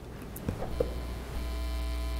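Electrical mains hum and buzz in the audio feed: a steady low hum with a ladder of higher buzzing tones that sets in about a second in and then holds. A couple of faint clicks come just before it.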